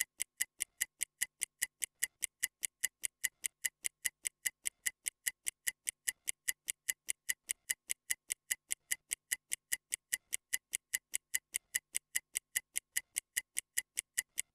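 Stopwatch ticking, sharp and high, about five even ticks a second, counting off a 30-second rest period between exercises.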